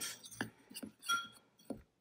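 Metal spoon stirring flour and baking powder in a glazed ceramic bowl: a few light taps and scrapes of spoon on bowl, with one ringing clink a little over a second in.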